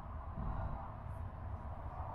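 Quiet background: a steady low rumble with a faint even hiss, no distinct event.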